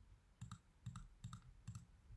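Faint computer clicking: about seven short clicks, mostly in close pairs about half a second apart, as objects are picked with the pointer.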